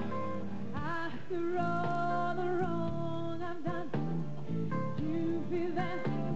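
A woman singing a slow soul ballad live with a backing band, holding long notes that waver with vibrato.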